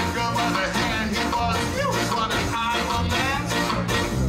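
Live ska band playing: electric guitar, keyboard and drums.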